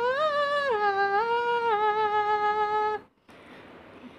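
Nose-played melody: a woman humming through her nose while her fingers press against it, a single clear line of held notes that step down in pitch. It stops abruptly about three seconds in, leaving quiet room tone.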